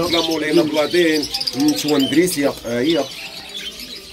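Many caged pet birds chirping together, with people's voices talking underneath.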